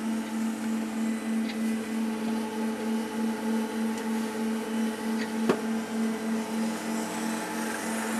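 Zymark RapidTrace SPE workstation modules running their rack scan: a steady motor hum that pulses about three times a second, with a couple of faint ticks.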